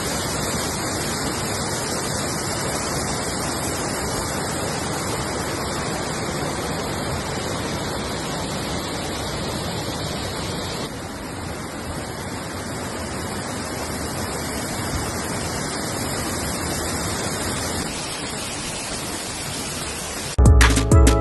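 Steady rush of falling and running water from a waterfall and a rocky river, with a slight change in tone about halfway through and a small drop in level near the end.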